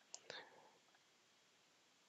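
Near silence: room tone, with a faint click and a brief soft vocal sound from the speaker just after the start.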